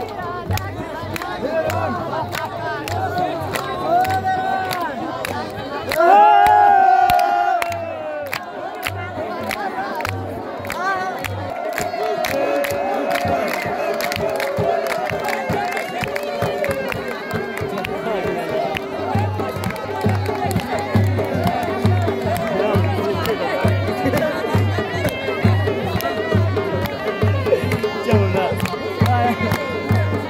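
Dance music from a dhol drum beating a steady rhythm with a melody line over it, mixed with the noise of a large crowd. There are claps and shouts, loudest about six seconds in.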